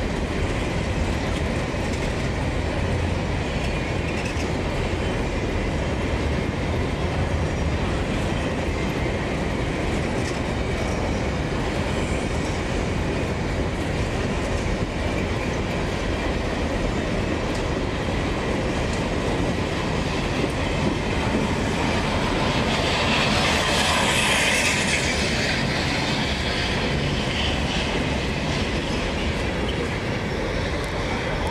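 Empty freight wagons of a long train rolling slowly past on the rails, with a steady rumble and clickety-clack of wheels over rail joints. About three-quarters of the way through, the sound grows louder and higher-pitched for a few seconds.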